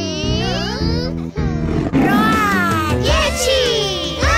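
Upbeat children's song backing music with cartoon characters voicing playful roars, several gliding vocal cries over the beat.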